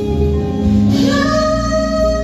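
A woman singing a gospel song live into a microphone, backed by a band with bass guitar and drums. About a second in she takes up a long held note.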